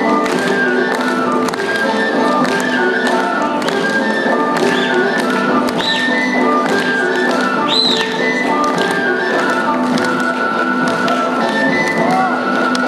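Albanian folk dance music with a running melody line over a beat, and the tapping and stamping of dancers' feet on a wooden stage. Two brief high-pitched rising-and-falling glides cut through about six and eight seconds in.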